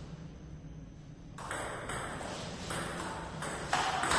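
Table tennis rally: a celluloid ball pinging off the bats and the table, a quick series of sharp hits starting about a second and a half in.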